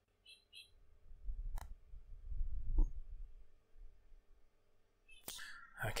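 Faint room tone with a few quiet clicks, one sharper click about a second and a half in, and a low rumble in the middle.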